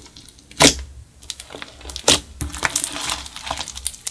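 Hands squeezing and stretching a large blob of clear slime mixed with makeup: two sharp pops, the louder about half a second in and another about two seconds in, then a run of fast sticky crackles as the slime is pulled apart.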